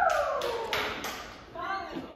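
The pop track's last note glides down and fades out. Four sharp taps come about a third of a second apart, then a short burst of a voice near the end.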